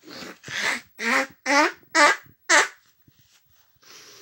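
A high-pitched voice making a run of six short, loud vocal sounds about half a second apart, the first one quieter.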